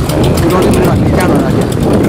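A man speaking close to the microphone over a loud, rough rumbling background noise.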